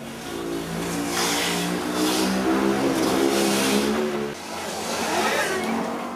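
A motor vehicle's engine revving, its pitch stepping up and down over a rushing noise, falling away about four seconds in.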